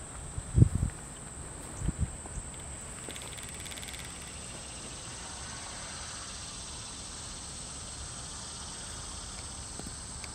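Outdoor ambience with a steady high-pitched insect drone, and two low thumps in the first two seconds.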